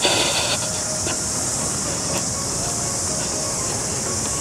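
A steady, high-pitched shrilling chorus of cicadas in the surrounding bush.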